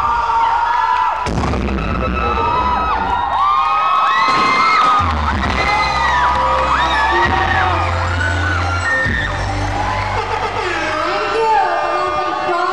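Loud dance music with heavy bass, under a crowd cheering and screaming with many high, rising-and-falling shouts.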